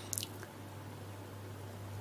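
A brief wet mouth click, a lip smack close to the microphone, about a fifth of a second in, with a fainter one shortly after, over a low steady hum in a pause between spoken phrases.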